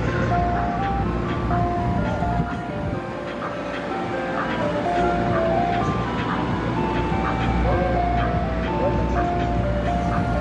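Ice cream truck chime playing a simple tinkling melody of single held notes, over the steady low hum of idling truck engines.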